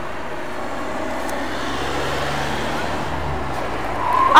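Road traffic: a car passing on the street, a steady tyre-and-engine hum that swells slightly in the middle and then eases off.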